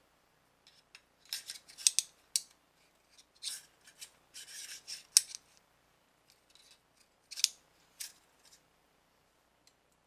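AR-15 charging handle and upper receiver being fitted together by hand: a string of short metallic scrapes and clicks as the parts slide in and seat, the sharpest click about five seconds in.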